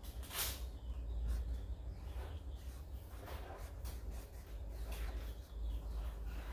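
A paintbrush loaded with oil paint drawn across a stretched canvas: short, soft swishing strokes about once a second, the strongest just after the start, over a low steady hum.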